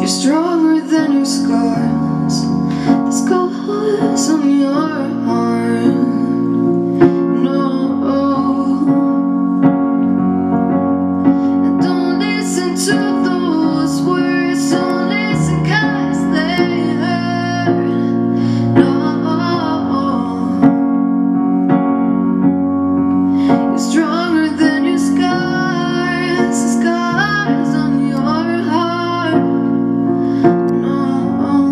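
A woman singing a slow song over sustained chords played on a Roland RD-88 stage piano. The voice drops out twice for several seconds between phrases while the piano carries on.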